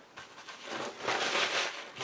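Paper kitchen towel rustling and rubbing over a damp acetate sheet, a soft scrubbing noise that builds about halfway in and fades near the end, as embossing-powder haze is wiped off the heat-embossed acetate.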